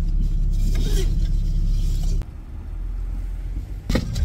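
A car's engine running, heard from inside the cabin as a steady low hum. About halfway through it drops suddenly to a quieter hum, and a short knock sounds near the end.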